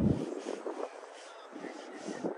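Faint outdoor background noise with a few light, irregular ticks. A low rumble cuts off just after the start.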